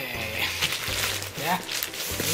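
Background music playing under a short spoken "yeah", with crackly rustling of a plastic-wrapped parcel being handled in the first second.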